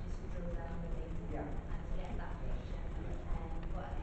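Faint speech from across the room, over a steady low rumble.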